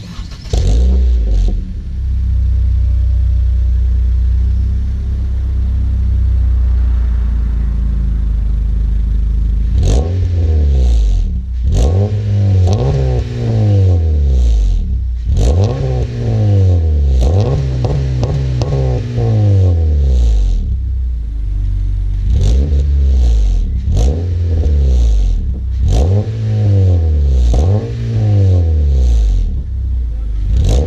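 2014 Honda Civic EX's 1.8-litre four-cylinder, heard through a Yonaka catback exhaust, idling steadily with a deep tone. About a third of the way in it is revved again and again in place, each rev climbing and falling back, with the blips coming quicker and shorter toward the end.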